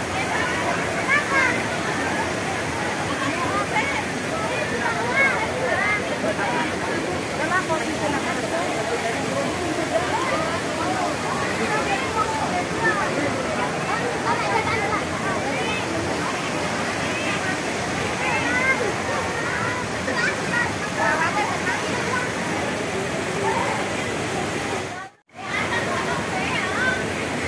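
Many people talking and calling out at once over the steady rush of falling hot-spring water at a crowded bathing pool. The sound cuts out briefly near the end.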